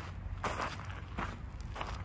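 Sneaker footsteps crunching on loose gravel and dirt, about three steps at an easy walking pace.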